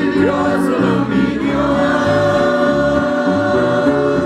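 A man and a woman singing a Spanish gospel hymn into microphones with guitar accompaniment, holding one long note from about a second in.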